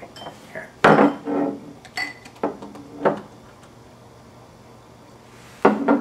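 A glass set down hard on a table with a sharp knock about a second in, followed by a few lighter clinks of glass.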